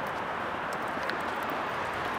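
Steady outdoor background noise with a few faint, irregular footfalls on pavement.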